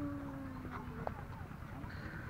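Quiet outdoor background: a few faint footsteps on brick paving, with a faint voice held in the background during the first second.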